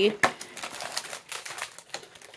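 Small clicks and light crinkling of thin plastic handled in the fingers: a doll's clear plastic jacket being turned and stretched. One sharp click comes just after the start, then fainter ticks and rustle that die away.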